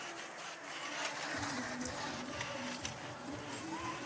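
Robotics competition arena ambience: a steady mix of hall noise from the crowd and robots, with faint sustained tones and a few light knocks.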